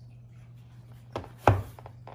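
Two short knocks, the second louder, as the closed laptop is handled and bumps against its box.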